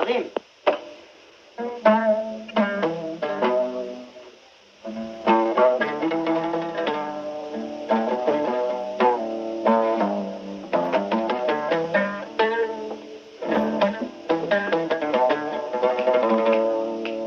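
Kaban, the Somali oud, played solo: runs of quick plucked notes, with two short breaks about half a second and four seconds in.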